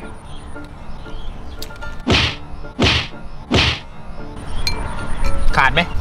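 A man makes three short, harsh breath sounds, about two-thirds of a second apart, after tasting a spoonful of a very hot chilli dipping sauce (nam jim jaew).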